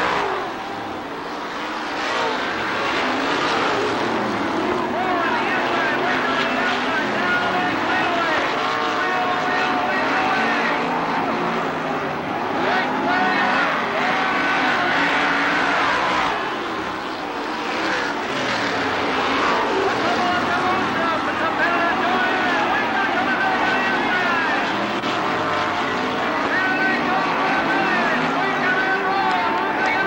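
Several winged dirt-track sprint car engines racing at once, their pitch rising and falling continuously as the cars accelerate down the straights and lift through the turns. The sound dips briefly twice, about a second in and again past the middle.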